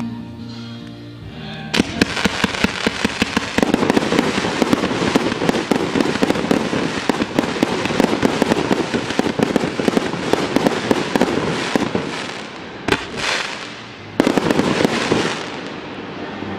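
A 1.2-inch, 49-shot fan-shaped firework cake firing: from about two seconds in, a dense, rapid run of shots and crackling breaks from its crackling bouquet effects. After a lull with one short burst, a final loud flurry of crackling comes near the end and fades.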